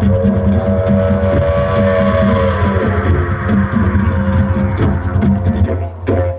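Didgeridoo playing a strong, low, rhythmic drone. A higher held tone rides over it in the first half and bends down about two and a half seconds in. The drone dips briefly at the very end.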